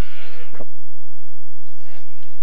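A brief breath or voice sound close to the commentator's microphone in the first half second, then a steady low hum with faint background hiss from an old home-video recording.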